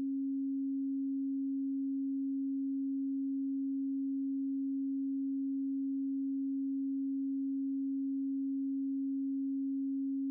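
A steady pure electronic tone at 272 Hz, unbroken and unchanging: an alternating isochronic tone that switches back and forth between the left and right speakers at an alpha-range rate.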